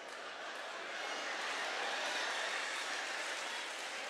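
A live audience applauding and laughing, swelling over the first couple of seconds and then easing off a little.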